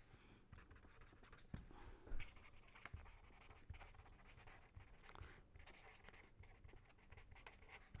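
Faint scratching of a pen writing on paper, with short strokes and a louder tick about two seconds in.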